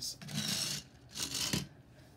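Plastic Lego tractor being handled and moved on a wooden desk: two short bursts of rubbing and scraping, the second ending in a light knock.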